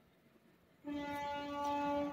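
Near silence, then a little under a second in a steady pitched tone with many overtones begins and holds unchanged to the end.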